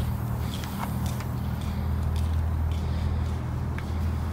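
Steady low hum of an idling engine, with a few faint clicks in the first second as an SUV's liftgate is released and swings up.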